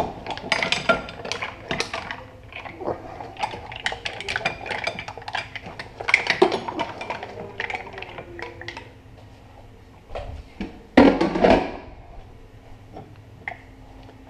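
Cooked mussels in their shells clattering and clinking as they are tipped and shaken out of a wok into a metal bowl, the clatter thinning out after about nine seconds. A louder clatter about eleven seconds in.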